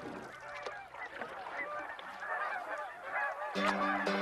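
A flock of geese honking, with many short calls overlapping. Music with steady held notes comes in near the end.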